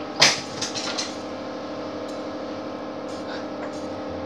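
A sharp knock about a quarter of a second in, with a few lighter clicks, over a steady low hum.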